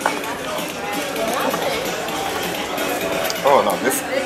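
Several people talking at once in a large room: indistinct, overlapping conversation.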